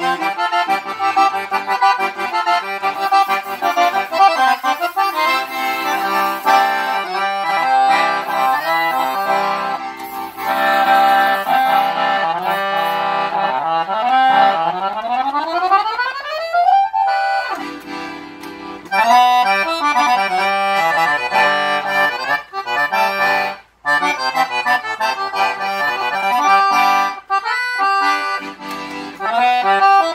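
Sonola SS6 piano accordion with a double tone chamber (cassotto) and Binci reeds being played: a continuous melody with chords, with a fast rising run about halfway through and a brief break a few seconds later.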